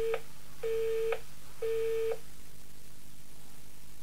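Telephone busy tone after the call ends: three steady beeps, each about half a second long, repeating once a second, the last stopping about two seconds in.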